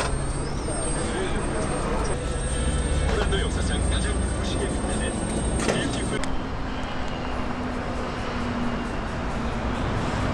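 Busy street ambience: a low traffic rumble with indistinct voices, and the background changes abruptly a little past halfway.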